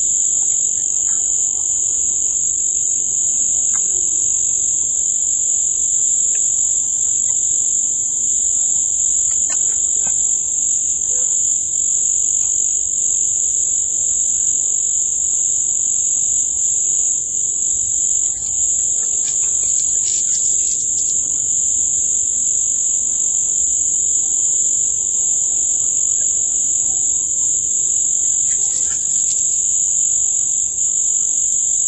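A steady, loud, high-pitched whine that holds unchanged throughout, with a fainter lower tone beneath it and a few faint clicks in the second half.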